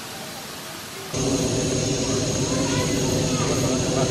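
Steady hiss of a misting system's spray nozzles putting out fog over bamboo. About a second in it cuts abruptly to a louder, steady droning hum with people's voices.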